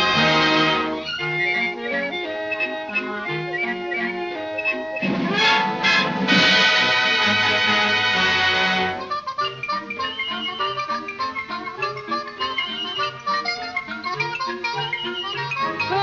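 Orchestral film music with brass. A loud held chord opens and gives way to a busier passage. It swells to another long, loud chord about five seconds in, then drops to a lighter, quieter passage after about nine seconds.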